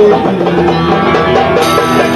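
Live music with plucked string instruments playing, a sung line trailing off right at the start.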